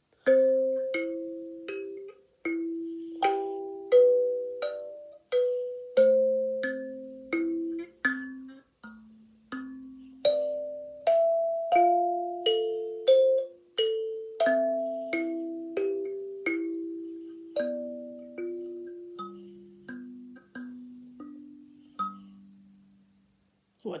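Wooden kalimba (thumb piano) played with the thumbs: a slow melody of plucked metal tines, single notes and pairs that ring and fade, moving lower toward the end, where the last note rings out.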